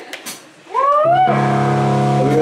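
Electric guitar through a stage amplifier: a short rising pitch glide a little under a second in, then a loud chord ringing on steadily from just past a second.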